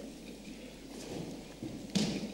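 Paper rustling as loose sheets are handled at a lectern, over a low shuffling noise in a large hall, with a soft knock at the end.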